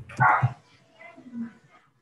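A dog barking once, briefly, picked up through a videoconference microphone, followed by faint low sounds.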